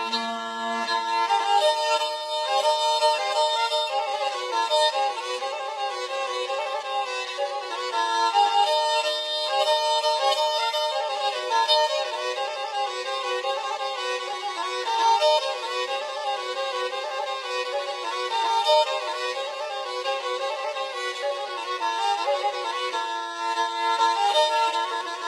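Black Sea kemençe playing a folk melody, the bowed fiddle line going on alone after the singing stops.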